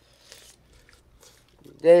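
Faint sipping and mouth sounds as hot soup is tasted off spoons, with a few soft clicks, before a woman's voice says "Delicious" near the end.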